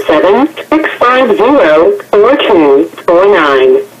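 Recorded automated voice of a jail's inmate phone system reading its call-setup prompt, heard over a telephone line with the thin, narrow sound of a phone.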